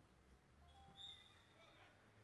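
Near silence: faint background ambience, with a brief faint high chirping about a second in.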